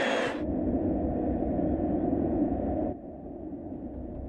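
Muffled stadium ambience: a steady low rumble and murmur with the highs cut off, dropping quieter about three seconds in.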